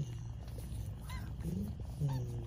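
A white flame-point Himalayan kitten purring steadily, a low rapid rumble, while it mouths a person's fingers.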